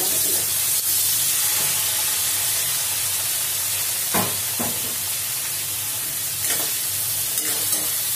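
Cubed brinjal and raw plantain frying in a metal kadai, with a steady sizzle. A metal spatula knocks and scrapes against the pan a few times, about four seconds in and again toward the end.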